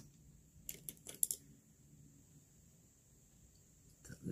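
A quick cluster of about five light clicks and taps about a second in, from handling an eyeshadow palette and brush, then faint room tone.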